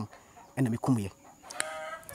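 A rooster crowing faintly near the end, one short, even-pitched call.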